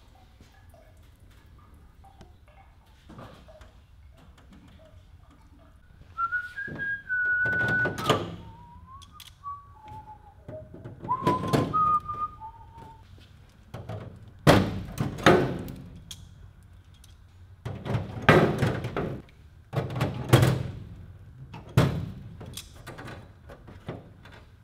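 Metal parts and tools knocking as the aluminium cabin floor of a kit aircraft is worked with clecos: a string of sharp thunks and clatters, more of them in the second half. From a few seconds in, a person whistles a short tune of stepping notes.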